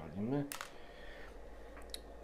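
A single sharp click about half a second in, followed by a low rumble of handling noise as the camera is moved about.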